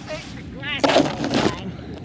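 A loud, rough rustling burst lasting under a second, about a second in, as the quadcopter carrying a zip-tied phone comes down into the grass and the phone's microphone is brushed and knocked. A short vocal sound comes just before it.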